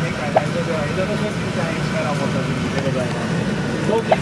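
Steady low rumble of a moving vehicle heard from inside the passenger cabin, with a voice warbling in pitch over it.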